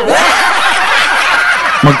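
Laughter lasting under two seconds, many short overlapping laughing voices, cut off just before speech resumes.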